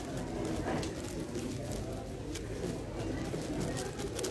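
A plastic 7x7 speed cube being turned by hand, its layers giving scattered light clicks, over a steady low background murmur.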